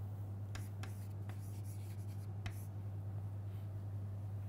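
Chalk writing on a blackboard: short taps and scratches of the chalk, several close together in the first second and a half and one more about halfway through, over a steady low hum.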